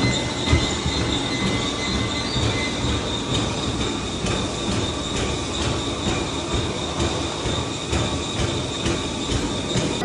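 Treadmill running: the motor and belt give a steady high whine over a dense rumble, with footfalls striking the moving belt at a steady running pace.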